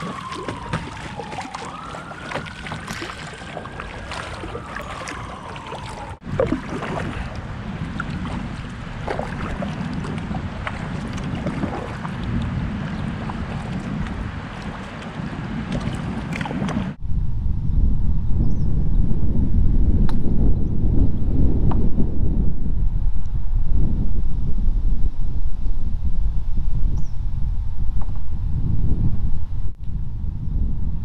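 Kayak moving down a shallow river: water lapping and splashing around the hull and paddle, with many small drips and clicks. In the first few seconds a long whistle slides down in pitch, rises and falls again. From a little past halfway a loud low rumble of wind on the microphone takes over.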